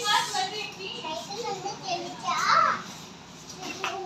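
A young child's voice babbling and calling out in short wordless bouts, loudest about two and a half seconds in.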